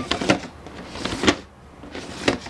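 Something loose sliding and knocking inside a boxed 1/6-scale action figure as the box is tilted back and forth: a few dull knocks with a scrape between. It is the sign of a piece that has come loose from its plastic blister tray or broken off; which, the owner cannot tell.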